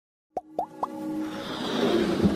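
Intro sting for an animated logo: three quick rising plops about a quarter second apart, then a music bed swelling up.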